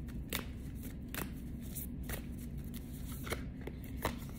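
A deck of oracle cards being shuffled and handled by hand, with several sharp card snaps spaced roughly a second apart over a low steady hum.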